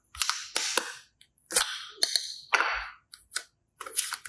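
A plastic toy capsule snapping open by hand and soft slime being pulled and squished out of it: a run of about six sharp clicks, each followed by a sticky crackling squelch.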